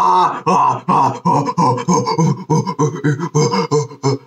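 A cartoon character's male voice crying out in fright: short, repeated cries, about three a second.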